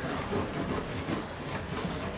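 A cloth being scrubbed back and forth against a wall, a continuous uneven rubbing.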